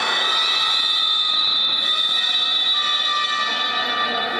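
A horn sounding one long, steady blast made of several tones at once, in a basketball gymnasium.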